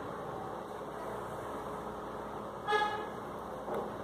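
Steady background noise with one short pitched toot about two-thirds of the way through.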